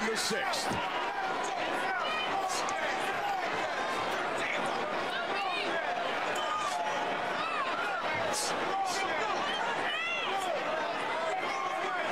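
Arena crowd at a boxing match, heard through the fight broadcast: a steady din of many voices with scattered shouts and a few sharp knocks.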